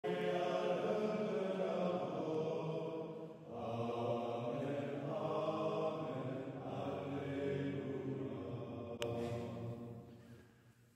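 Men's voices chanting together in unison, in long held phrases with short pauses between. There is a brief click about nine seconds in, and the chant fades away near the end.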